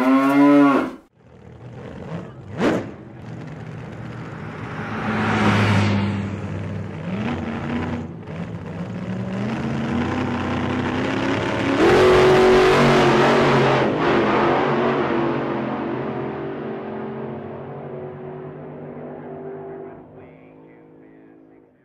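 Hot rod coupe's engine revving, cutting off sharply about a second in, then running and accelerating with its pitch stepping upward. It swells around five seconds in, comes in loud again about twelve seconds in, and fades away toward the end.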